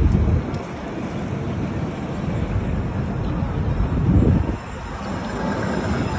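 City street noise with traffic, and wind rumbling on the phone's microphone. A louder low rumble swells and fades about four seconds in.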